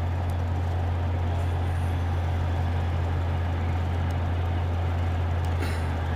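Steady road and engine drone heard inside a truck's cabin while driving along a highway, with a strong low hum under an even rumble.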